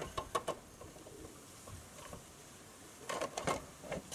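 Plastic entrance cover of an Apimaye Thermo Hive being handled and pushed onto the moulded plastic hive entrance: a few light clicks and knocks of plastic on plastic at the start, a quiet stretch, then another cluster of knocks about three seconds in.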